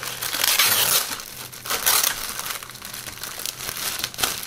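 Clear plastic bag holding plastic model-kit sprues crinkling as it is handled, in irregular bursts that are loudest about half a second in and again about two seconds in.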